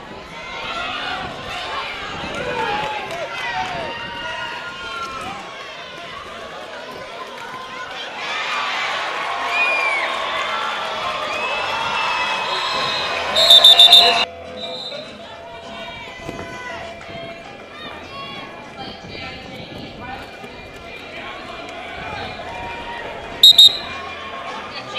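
Roller derby referee's whistle: a quick run of short, shrill blasts about halfway through and two short blasts near the end, the loudest sounds. Under them a crowd of spectators shouts and cheers, swelling just before the first blasts.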